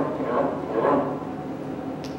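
A man's voice over a microphone: a few short, quiet sounds without clear words, about half a second apart.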